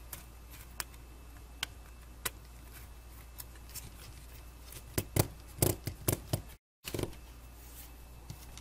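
Small screwdriver and machine screws clicking and tapping against an aluminium heatsink and circuit board as the screws are started into the stepper driver chips: a few scattered clicks at first, then a cluster of louder clicks about five to six seconds in. The sound cuts out completely for a moment near the end.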